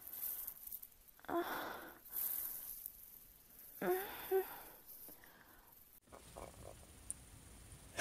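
A person's breathy, wordless vocal sounds: sighs and gasps with short voiced moans that fall in pitch, in three bursts over the first five seconds or so. After that only faint hiss remains.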